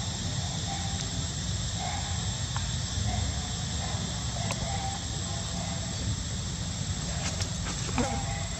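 Steady outdoor background noise: a continuous low rumble with a thin steady high hiss, broken by a few faint short calls and light clicks.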